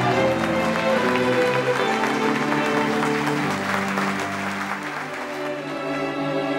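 Audience applause over a slow piece of chamber music for bowed strings, violin and cello. The clapping fades out near the end while the strings carry on.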